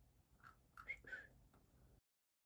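Near silence: faint room tone with a few soft, short sounds about half a second to a second in.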